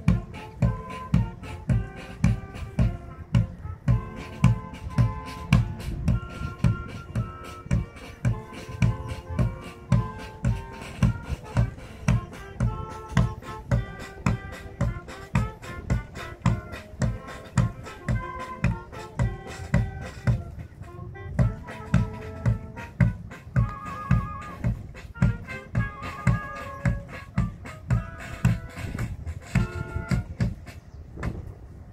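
March music for a parade: a steady low beat about two times a second under a melody.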